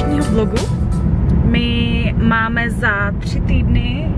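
Steady low road and engine rumble inside a moving car's cabin, under a woman talking; a music track ends within the first second.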